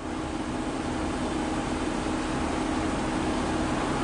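Steady city street noise from a busy intersection: an even, unbroken hiss with a low traffic hum, without distinct events.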